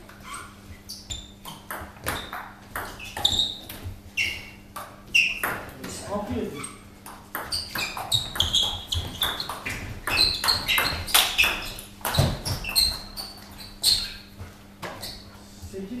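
Table tennis rally: the celluloid ball ticking sharply off the table and the rubber-faced paddles in quick runs of hits, with short breaks between points.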